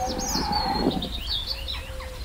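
Small birds chirping in quick, repeated short calls over a low steady rumble and a faint held tone, a forest ambience laid under a logo.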